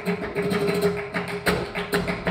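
Live flamenco music: acoustic guitar playing under a quick, steady rhythm of sharp handclaps (palmas).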